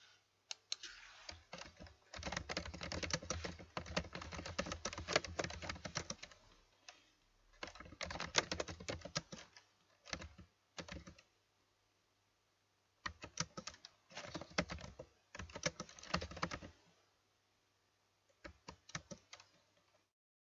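Typing on a computer keyboard: runs of rapid key clicks in several bursts, broken by short pauses of a second or two.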